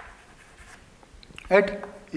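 Chalk writing on a chalkboard: a sharp tap of the chalk at the start, then faint scratching as it moves across the board. A man says one word near the end.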